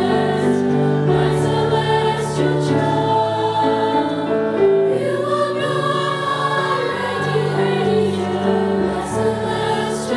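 A mixed school choir of teenage voices singing a slow lullaby in several parts, holding long, steady chords that shift every second or two.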